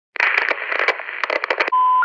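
Crackling radio-style static, with sharp crackles through the hiss, cutting off abruptly about one and a half seconds in. A single steady electronic beep follows.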